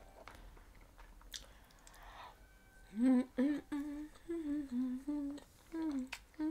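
A woman humming a short run of held notes that step up and down, starting about halfway through; before that it is quiet apart from a faint click.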